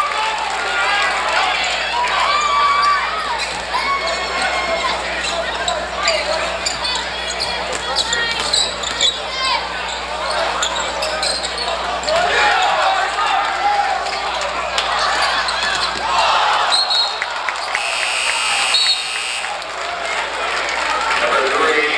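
Basketball game in a gym: the crowd and players talk and call out indistinctly throughout, over a basketball being dribbled on the hardwood court.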